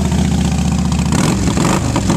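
2006 Harley-Davidson Heritage Softail's fuel-injected Twin Cam 88B V-twin idling through Vance & Hines Longshots exhaust pipes, just after being started. The engine speed wavers briefly past the middle.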